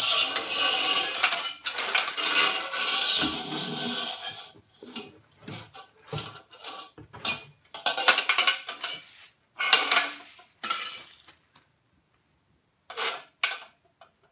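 Thin metal poles of a tube frame clinking, rattling and scraping as they are handled and fitted into plastic connectors: a long run of clatter over the first four seconds, then short separate bursts of it.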